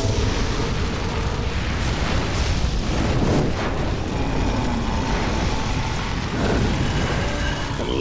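Film sound effect of a huge magical fire (Fiendfyre) burning: a loud, steady, dense rush and rumble of flames.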